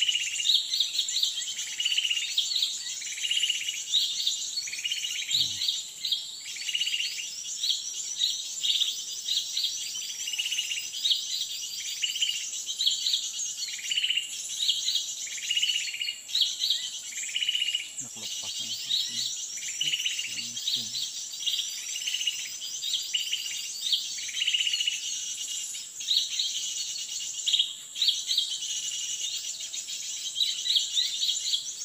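A bird call repeated steadily, one short note roughly every second, over a constant high buzzing of forest insects. A few faint low knocks come about two-thirds of the way through.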